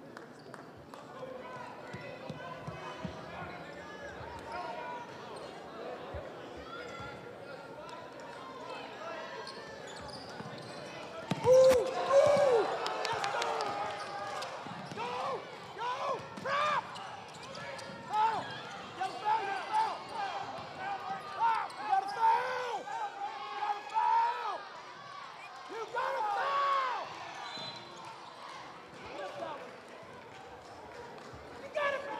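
High school basketball game in play: a basketball bouncing on the court amid crowd chatter and shouting voices. About eleven seconds in it gets louder, with sharp knocks and a run of short calls.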